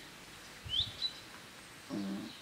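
A small bird chirps in the background: one quick high upward chirp a little under a second in, followed by a brief high note, with a soft low bump at the same moment.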